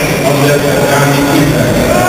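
A man speaking, loud and close.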